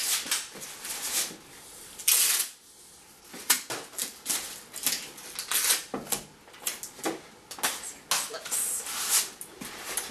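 Masking tape pulled off the roll and pressed across the top of a cardboard oatmeal canister: a run of short crackles and rips, with one longer rip about two seconds in.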